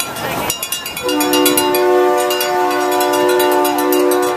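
Truck air horns blaring: one long, steady multi-note blast that starts about a second in.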